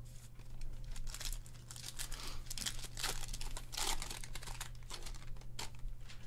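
A trading card pack wrapper being torn open and crinkled by hand, in a string of irregular crinkling rustles.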